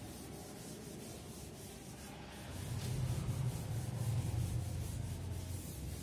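Cloth wiping chalk off a chalkboard: a steady rubbing that gets louder about halfway through as the board is scrubbed harder.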